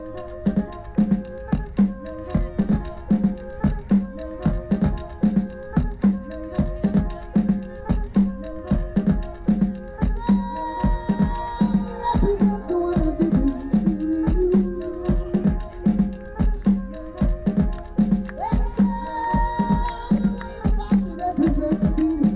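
Live band music heard from within the crowd: a fast, busy drum rhythm over a steady low note, with long held higher notes joining about ten seconds in and again near the end.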